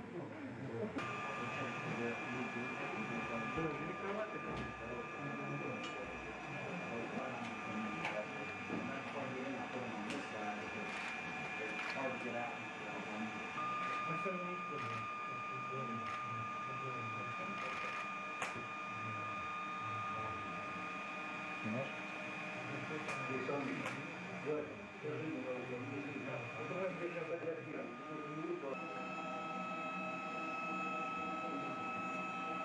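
A steady high-pitched electrical whine, starting about a second in and stepping slightly higher near the end, under a low murmur of voices.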